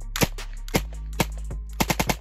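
CZ 247 submachine gun firing from an open bolt: single shots about half a second apart, then a quick burst of three near the end.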